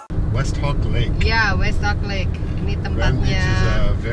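Steady low road and engine rumble of a moving car heard from inside the cabin, with voices talking over it.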